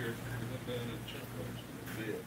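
Faint, indistinct voices talking in the background over a steady low hum, with a short click near the end.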